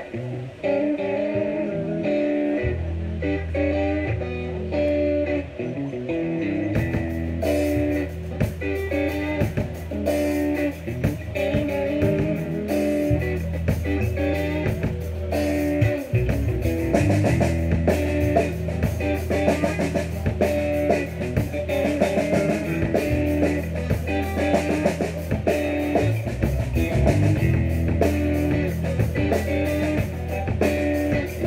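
Live rock trio of electric guitar, bass guitar and drum kit playing a funky instrumental groove. The guitar riff opens alone, the bass comes in about three seconds in, and the drums join at about seven seconds.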